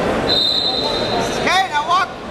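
A steady high-pitched whistle for about a second, then a quick cluster of sharp rising and falling squeaks, like wrestling shoes skidding on the mat, over gym background noise.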